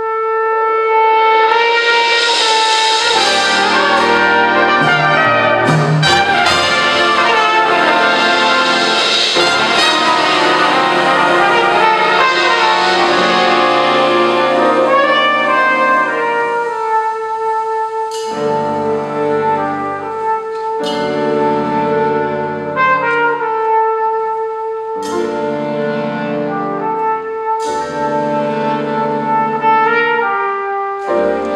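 Live jazz band with brass playing a slow ballad, a trumpet holding long lead notes over the ensemble. The band comes in together at the start and builds to a full sound, then thins after about halfway to held trumpet notes over repeated low chords.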